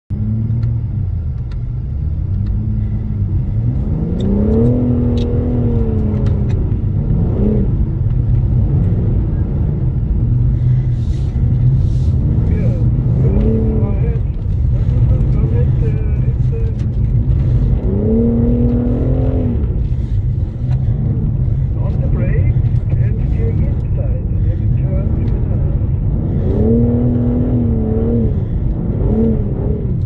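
BMW M4 Competition's twin-turbo straight-six heard from inside the cabin, revving up and falling back in repeated surges as the rear-wheel-drive car is driven on snow, over a constant low rumble of tyres and road.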